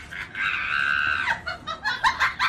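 A man screaming in pain from a scraped knee: one high scream held for about a second, with short knocks and scuffles around it.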